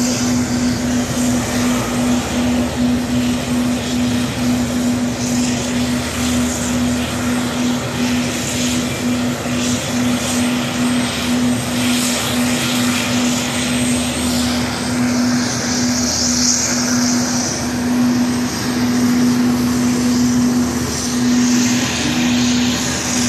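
US Navy LCAC assault hovercraft running on the beach: its gas turbines and ducted propellers keep up a loud, steady roar with a constant droning note.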